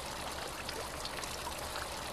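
Water from a statue fountain pouring and trickling steadily.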